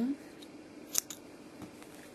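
Scissors cutting a strand of yarn: one sharp snip about a second in.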